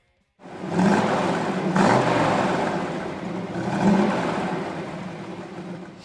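Car engine revving three times with a throaty rush, loudest about a second in and fading away over the following seconds.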